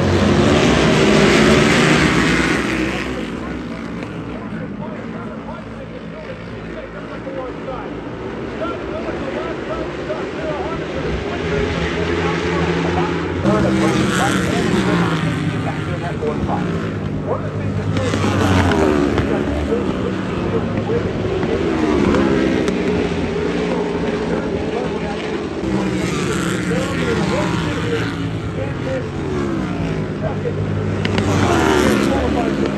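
A pack of flat track racing motorcycles getting away from the start and racing around a dirt oval. Their engines run loud at first, then rev up and drop again and again as the bikes accelerate, shift and pass.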